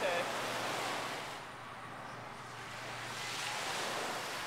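Small waves washing onto a sandy beach, with wind on the microphone: a steady rush that thins about a second and a half in and swells again near the end.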